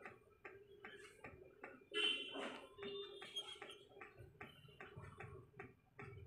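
Faint, even ticking, about four ticks a second, with a brief louder squeak about two seconds in.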